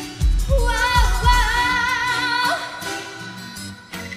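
J-pop backing track with a female voice holding one long sung note with vibrato. A few heavy kick-drum beats sound in the first second.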